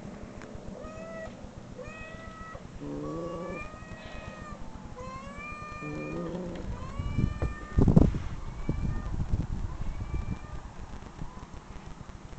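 Cat meows played back from an online video: a string of short, high, arched meows about once a second, with two lower calls around three and six seconds in. A loud knock or rustle of handling stands out near eight seconds in.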